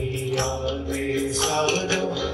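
Live Hindi devotional bhajan: a man's voice chanting or singing over a held harmonium tone, with hand-drum strokes throughout.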